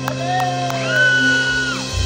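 A live band holds a sustained low chord, with a few long, gliding high calls from the audience over it just before the song starts.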